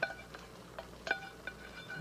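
A spoon knocks and scrapes against a stainless steel saucepan about six times, the pan ringing briefly after each knock, as cooked vegetables are scraped out of it into a pot.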